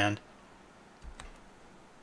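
A single computer mouse click about a second in, against faint room noise.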